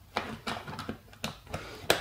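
Flat-blade screwdriver prying at the seam of a cheap plastic travel adapter's case: a few sharp clicks and creaks of plastic, the loudest near the end.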